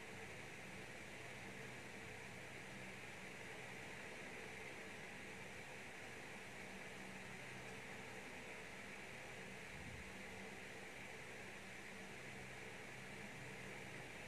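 Faint, steady hiss with a low hum underneath: background room tone, with no distinct sound event.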